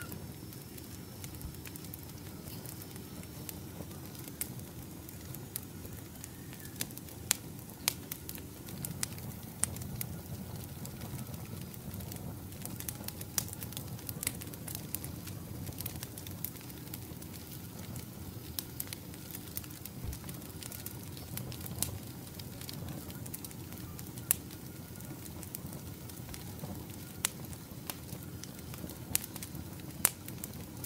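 Split-wood campfire burning, crackling with frequent irregular sharp pops and snaps over a low, even rush of flame.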